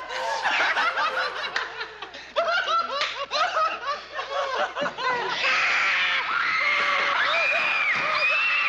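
Several people laughing and chuckling in short bursts. A little past halfway, a denser, higher-pitched mass of voices comes in, like a group yelling.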